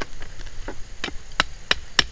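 Cold Steel Bushman fixed-blade knife chopping into the end of a wooden stick to carve a point: a faint knock, then four sharp chops in quick succession, about three a second, in the second half.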